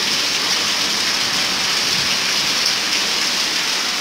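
Heavy rain pouring steadily onto a flooded yard, a dense, even hiss that does not let up.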